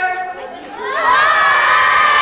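A large group of young girls shouting and cheering together, breaking out loud about a second in and held.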